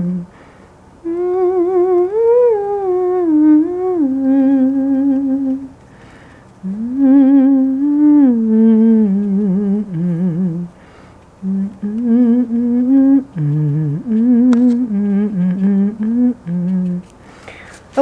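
A person humming a slow, meandering tune with held, gliding notes, in three phrases with short pauses between them.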